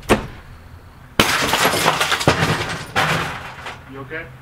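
Glass breaking: a sharp knock, then a sudden crash about a second in, with pieces clattering and crackling for a couple of seconds before dying away.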